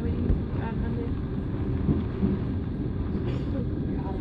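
Steady low rumble of a moving train, heard from inside the carriage.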